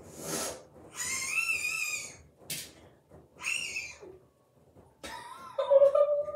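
A boy gasping and giving high-pitched, wavering squeals from the shock of ice-cold water just poured over himself. There is a sharp breath, then a long squeal, a short burst, and another squeal, followed by a lower voice sound near the end.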